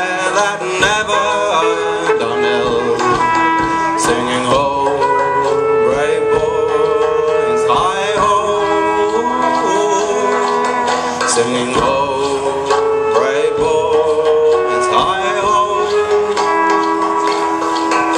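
A live folk band plays a traditional English song, with a trumpet carrying long held melody notes that waver in pitch, over sharp rhythmic strokes.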